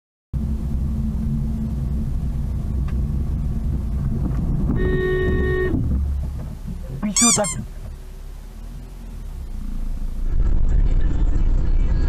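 Low steady rumble of a car's engine and tyres heard inside the cabin, with a car horn sounding once for about a second midway. Shortly after comes a brief high sound with wavering pitch, and the rumble grows louder near the end.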